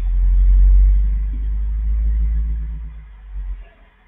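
A loud low rumble that swells up at the start, holds for about two seconds and fades away near the end.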